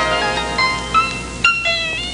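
Instrumental background music: a slow melody of plucked string notes, each ringing on and dying away, with fresh notes struck about a second and a second and a half in.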